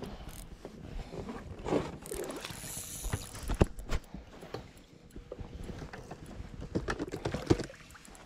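Spinning reel being cranked, with scattered clicks and knocks from the tackle and landing net as a rainbow trout is brought to the net.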